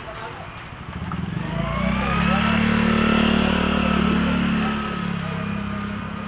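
A small engine swells up about a second and a half in, runs loud at a steady pitch, then eases off near the end. Voices chatter underneath it.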